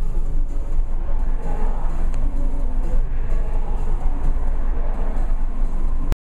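Steady low rumble of vehicle engine and road noise, heard from inside a car alongside a truck.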